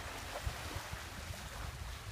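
Wind buffeting the microphone, with a sharp gust about half a second in, over the wash of small waves lapping at the shore.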